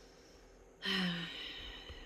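A woman's audible sigh about a second in: a brief voiced note that trails off into a breathy exhale, over the week's overspending.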